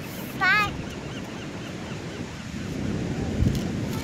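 Ocean surf washing on the beach with some wind on the microphone, steady throughout and swelling briefly a little after three seconds in. A short high-pitched wavering call sounds once, about half a second in.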